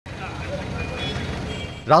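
Steady outdoor background noise with a low rumble, like distant traffic. A voice begins speaking right at the end.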